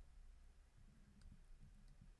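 Near silence: faint room hum with a few soft clicks of a stylus writing on a pen tablet.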